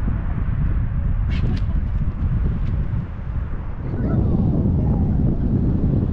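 Wind buffeting the microphone: a loud, steady low rumble that swells about four seconds in.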